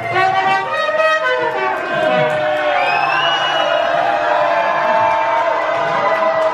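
Live lounge music: a small horn blown by the performer, with a crowd cheering and whooping over it and a rising whoop about halfway through.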